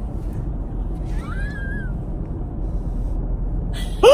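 Steady low rumble of a car's cabin, with one short high-pitched squeak that rises and falls about a second in.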